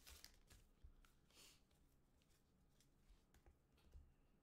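Near silence, with faint crinkling of a foil trading-card pack wrapper being handled. There are a few soft rustles near the start and another about a second and a half in.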